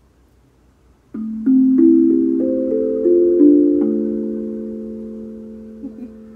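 Guda Freezbee steel tongue drum in a hexatonic arcane scale, struck with a mallet: a quick run of about nine notes starting a second in, climbing and then falling back, each left ringing and slowly fading.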